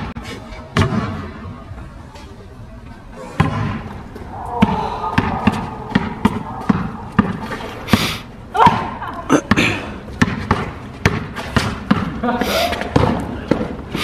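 Basketball dribbled on a hard outdoor court: a long run of sharp bounces, about two a second, in one-on-one play.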